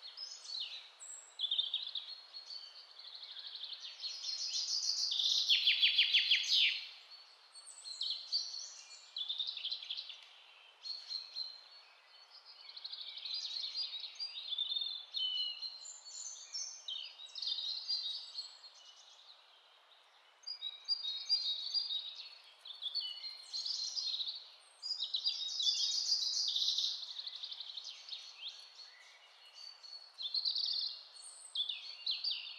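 Birds chirping and singing over a steady faint hiss, with many short calls throughout and a fast trill about five to seven seconds in.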